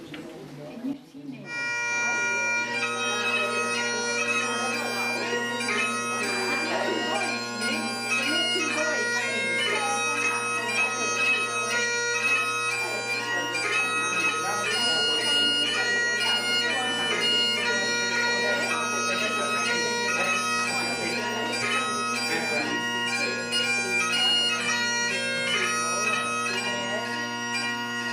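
Highland bagpipe music with steady drones under a lively melody, the tune for a Highland fling, starting about a second and a half in and playing on evenly.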